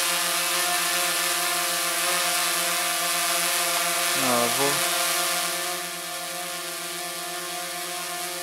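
DJI Phantom 3 Advanced quadcopter hovering, its four motors and propellers giving a steady multi-tone whine, a bit louder than usual because it is carrying the weight of an attached flashlight. The sound grows fainter about six seconds in.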